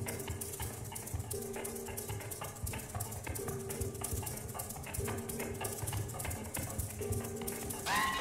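Solo percussion played in the hands: a dense, irregular stream of small clicks and taps, with a low two-note tone returning about every two seconds. Right at the end a struck metallic tone rings out clearly.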